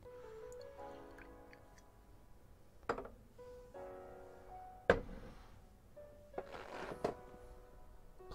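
Soft background music with held notes. Two sharp knocks come about three and five seconds in, the second the loudest, followed by a short rushing noise near the end, as the beer and tasting glass are handled on the desk.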